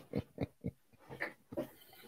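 A man chuckling quietly in short puffs, about three or four a second at first, then more spaced out.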